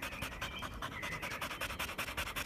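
Small scruffy terrier-type dog panting fast and evenly, tongue out.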